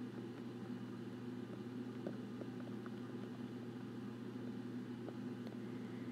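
Steady low electrical hum of room noise, with a few faint light ticks of a stylus on a tablet screen during handwriting.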